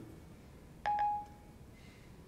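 Siri's two-note electronic chime from an iPhone 4S speaker, about a second in. Two quick notes, the second held briefly and fading within half a second, signalling that Siri has stopped listening and is processing the spoken request.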